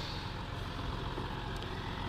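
Audi A6 3.0-litre V6 turbo-diesel idling with a steady, quiet low rumble.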